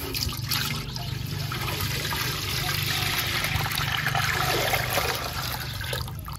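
Cow's milk poured in a steady stream from a pot into a large metal basin: it starts with a splash on the bare metal bottom, then runs on into the filling, frothing milk.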